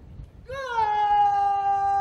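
Military bugle call: one long note that bends up and settles about half a second in, then is held steady.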